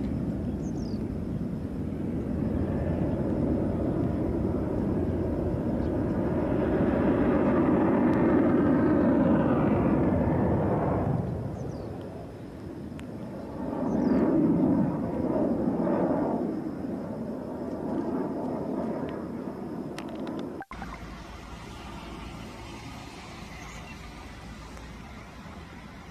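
Single-engine F-16 fighter jet's turbofan as it comes in to land and rolls along the runway, growing loudest about seven to ten seconds in, easing off, then swelling again around fourteen seconds. Near the end the sound drops suddenly to a lower steady jet noise.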